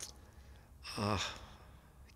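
A man's hesitant breath and a drawn-out "uh" about a second in, during a pause while he searches for a word, with a faint click at the start and quiet room tone around it.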